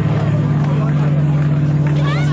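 A live rock band's amplified guitar and bass holding one low chord as a steady, loud drone, with voices over it.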